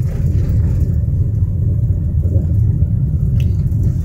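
Steady low rumble of a car driving at low speed, heard from inside the cabin: engine and road noise.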